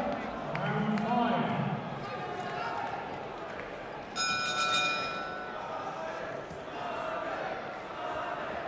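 A man's loud shout in a reverberant hall, then about four seconds in a boxing ring bell rings once and its ringing dies away over about a second and a half, signalling the round to start.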